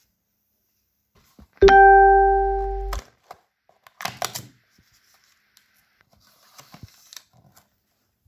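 A single plucked-string-like musical note rings out about one and a half seconds in, the loudest sound here, fading and then stopping abruptly after about a second and a half. Afterwards, soft brief clicks and rustling of cardboard and paper as a tea advent calendar's first door is opened and a tea sachet is pulled out.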